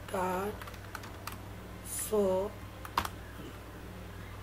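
A few light clicks, the sharpest about three seconds in, over a steady low hum.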